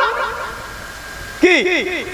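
A man preaching through a microphone and loudspeakers: a phrase dies away at the start, then about one and a half seconds in he voices a short word in a rising-and-falling, sung-out tone.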